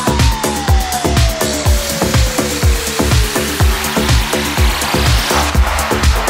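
Electronic dance music from a DJ mix: a steady four-on-the-floor kick drum at about two beats a second, under a long synth tone that glides slowly downward in pitch. A rising noise sweep builds in the second half.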